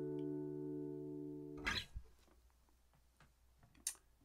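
Steel-string acoustic guitar's closing chord ringing and slowly fading, then stopped short by a hand damping the strings with a brief thump a little under two seconds in. A short click comes near the end.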